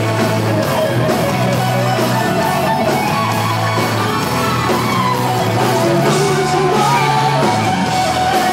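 A live rock band playing loudly: electric guitar over bass and drums, with a singer's voice over the top.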